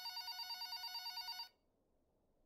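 Office telephone ringing: an electronic ring with a fast warble that cuts off about one and a half seconds in.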